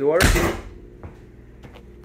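A vehicle door slammed shut, a single loud bang, after which the running Onan Quiet Diesel 7500 generator is left as a faint steady hum, barely heard through the closed body.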